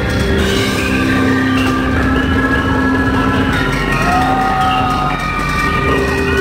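Live rock band playing loud: long held synth notes from a keytar, with a gliding note about four seconds in, over drums.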